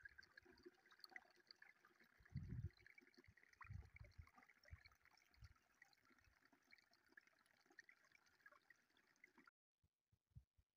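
Faint trickle of a small mountain stream running over rocks, with a few low thumps, the loudest about two and a half seconds in. It cuts off suddenly just before the end.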